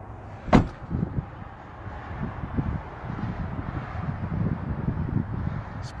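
Pickup truck's rear door shut with one loud slam about half a second in, followed by irregular soft knocks and rustling.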